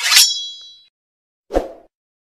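Logo-animation sound effects: a bright metallic clang with a ringing tail that fades within about a second, then a short dull thud about a second and a half in as the subscribe button pops up.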